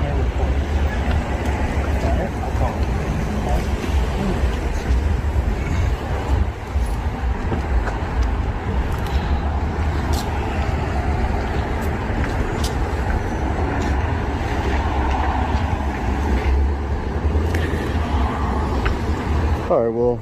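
Steady low rumble of street traffic noise, with faint, indistinct voices.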